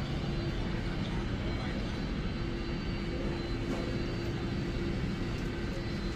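Steady drone of airliners on an airport apron, with a constant hum running through it and no distinct events.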